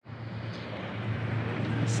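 Steady background noise with a low, even hum that grows slightly louder.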